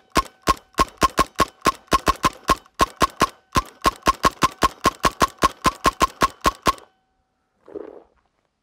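T15 paintball marker firing a fast, even string of about thirty shots, four or five a second, fed without a break by an MCS Box Mag v2, with a faint steady whine beneath the shots. The firing stops about a second before the end, and a brief rustle follows.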